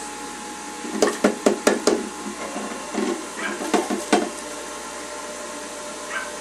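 Jack LaLanne centrifugal juicer motor running steadily with a constant hum. Two bursts of sharp knocking and clattering, about a second in and again near the middle, come as fruit is pushed down the feed chute into the spinning cutter.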